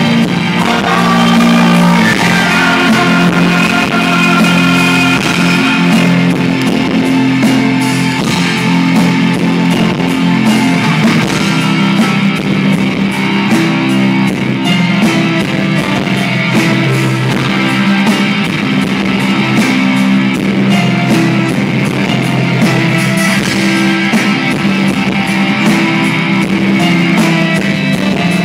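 Live rock band playing a song in a concert hall, guitar to the fore over a steady drum beat, heard from within the audience.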